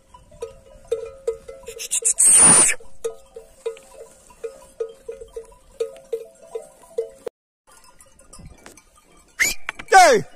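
Bells on grazing sheep clinking irregularly, two or three strikes a second, with a brief loud rush of noise about two seconds in; the bells stop abruptly about seven seconds in. Near the end a single call slides steeply down in pitch, a sheep bleating.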